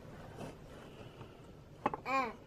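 Quiet room with faint low sounds and one short sharp click near the end.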